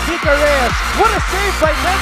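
Electronic dance music with a steady beat of about two kicks a second over deep bass, with short gliding voice-like pitched sounds laid over it.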